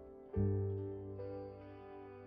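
Credits music: sustained pitched notes, with a loud deep note struck about a third of a second in that rings and slowly fades.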